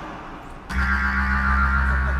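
A distorted electric guitar chord struck suddenly about two-thirds of a second in and held, over a deep sustained bass note.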